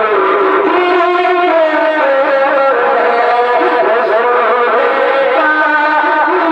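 A man sings a manqabat, a devotional poem in praise of a saint, into a microphone in a single solo voice. He draws out long wavering notes that slide downward, and a new phrase starts near the end.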